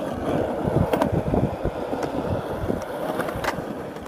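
Skateboard wheels rolling over smooth concrete: a steady rumble, with a few sharp clicks.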